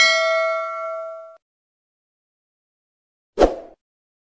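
A bell-like 'ding' sound effect for the notification-bell click of a subscribe animation, ringing and fading away over about a second and a half. A short whoosh transition effect follows near the end.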